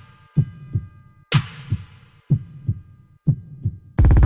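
Heartbeat sound effect in a film-trailer soundtrack: four low double thumps, evenly spaced about a second apart. A hissing crash-like hit lands with the second beat, and a faint held chord fades behind it.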